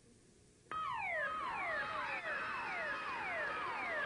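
Game show electronic sound effect: after a brief near silence it starts suddenly about a second in as a run of falling electronic tones, about two a second, over a noisy haze. It marks the reveal of a correct answer to the photo puzzle.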